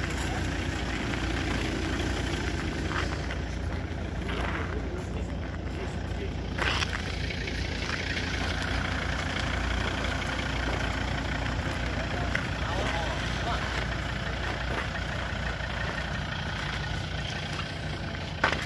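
A car engine idling steadily close by, a continuous low hum.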